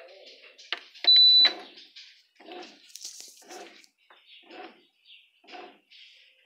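Bread machine starting its cake program: a short high electronic beep about a second in as the start button is pressed, then the machine running in short pulses about once a second.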